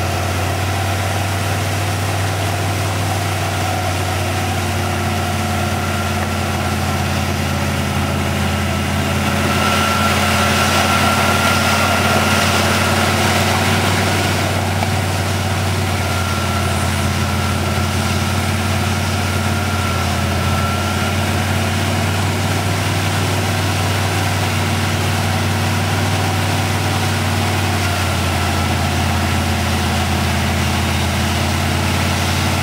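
Truck engine idling steadily at an even pitch. A thin high whine joins it about a third of the way in and fades out before two-thirds.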